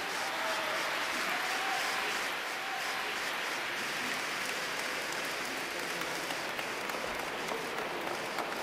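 Audience applauding, a dense and steady clapping that swells over the first second after the choir's final chord dies away.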